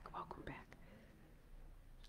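Near silence: room tone, with faint voices in the first half second.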